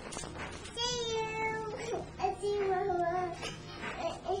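A high-pitched voice making two long, drawn-out calls: the first begins about a second in and holds one pitch, the second is slightly lower and wavers.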